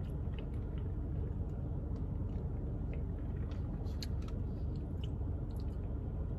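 Steady low rumble of a car interior, with faint scattered mouth clicks and lip smacks from someone tasting a fizzy soda.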